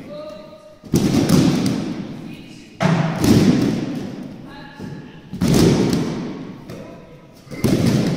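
A class of children doing backward judo breakfalls (ushiro ukemi) together on judo mats: about every two seconds a group slap-and-thud of bodies and arms hitting the mats, four rounds in all, each dying away with echo in a large sports hall.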